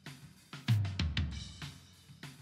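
Recorded drum-kit tom microphones played back through a mixing console with their gates bypassed: several tom hits with low, ringing decays, with snare and cymbal spill from the rest of the kit audible around them.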